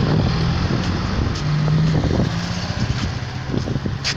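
Small pickup truck's engine running close by, a steady low hum over steady outdoor noise, weakening after about two seconds.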